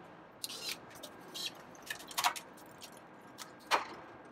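A few short metallic clicks and rattles from a road bike's drivetrain as the front shifter is worked and the chain drops onto the small chainring. The last is the loudest.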